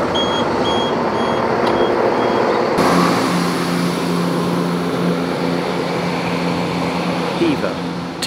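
Door-warning beeps on a class 171 Turbostar diesel multiple unit, a steady high beep repeating about two and a half times a second, until about two and a half seconds in. Then the train's underfloor diesel engines run with a steady low drone as it pulls out of the station.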